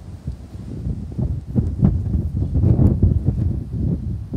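Wind buffeting the microphone in gusts, loudest about two to three seconds in.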